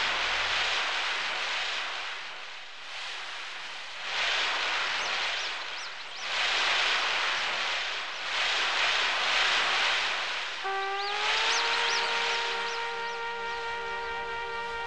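Ocean surf breaking on a beach, a rushing noise that swells and fades about every two seconds, with a few short high chirps. A sustained musical note with overtones rises in near the end and holds.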